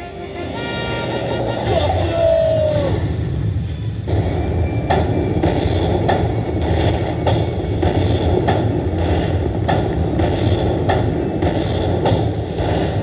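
Buffalo Link slot machine's bonus-feature sounds as the win meter counts up the collected credits. A short falling tone comes about two seconds in, then a steady tally beat of a little under two strokes a second, over a steady low casino-floor rumble.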